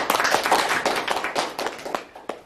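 Audience applauding: a dense run of hand claps that thins out and fades near the end.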